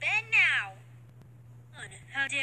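A high-pitched voice gives two short cries in quick succession, each falling in pitch, then stops.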